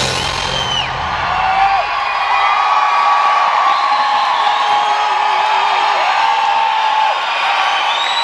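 Arena rock crowd cheering, whooping and whistling as the band's song comes to an end, with the band's last chord dying away in the first second.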